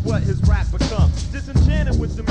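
1990s Bay Area underground boom-bap hip-hop from a four-track recording: a rapper delivering a verse over a beat with heavy bass.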